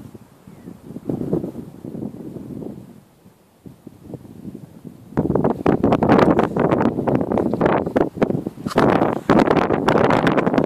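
Wind buffeting the camera microphone, gusty and fairly faint at first, then loud and crackly from about five seconds in as the camera is handled and moved.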